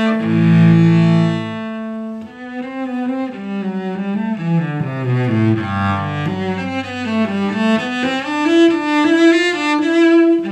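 Unaccompanied cello played with the bow: loud held notes for the first second and a half, then a flowing line of quicker notes that moves up and down and swells again near the end.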